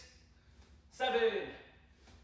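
A man's short, sharp shout, falling in pitch, given with an elbow strike as a martial-arts kiai. One shout comes about a second in, and the tail of the previous one fades at the start. The shouts come about every one and a half seconds.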